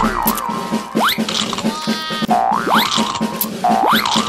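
Children's cartoon music with a steady beat, overlaid three times by springy boing sound effects that sweep quickly up in pitch and then wobble back down.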